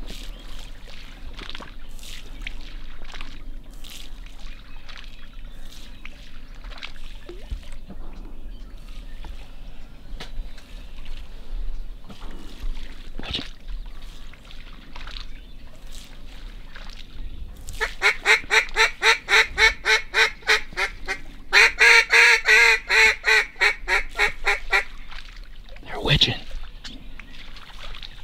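A duck call blown in two rapid runs of evenly spaced quacks, about five a second, starting about two-thirds of the way in, the second run louder. Before that there is only faint marsh background with scattered soft ticks.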